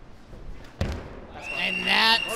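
A single sharp thump of the ball striking about a second in, as a shot goes into the goal. A man's voice starts to rise near the end.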